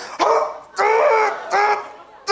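A man's high-pitched, strained vocal cries: three short yelps in a row, the middle one the longest.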